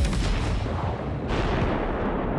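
Artillery fire: a heavy blast right at the start and a second sharp report about 1.3 seconds in, each dying away slowly.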